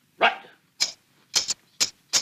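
Scissors snipping through cloth: about four short, sharp snips, uneven in spacing, with more following.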